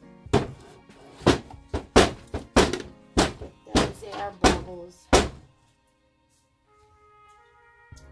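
Wooden loaf soap mold, freshly filled with cold process soap batter, knocked down on a stainless steel counter about a dozen times in quick succession, roughly two knocks a second, stopping after about five seconds. Tapping the mold like this settles the batter and drives out air bubbles.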